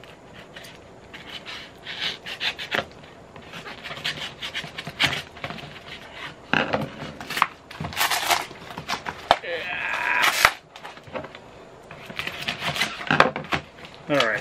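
A paper shipping package being picked and torn open by hand: irregular rustling and crinkling, with a run of sharp ripping tears about seven to eight seconds in.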